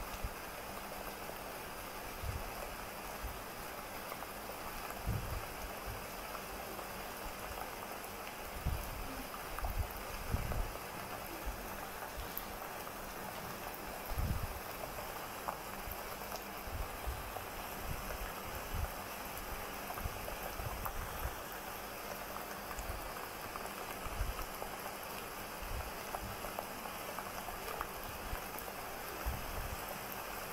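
A fine-tip ink pen drawing short strokes on a paper tile: a soft crackly scratching over a steady hiss, with irregular soft low thumps as the hands press on and shift the tile.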